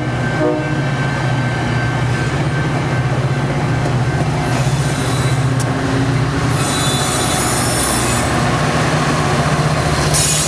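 A Metra commuter train of bilevel coaches rolling past as it slows into a station, with a steady low drone from its diesel locomotive. Bursts of high-pitched wheel squeal come about halfway through and again a couple of seconds later.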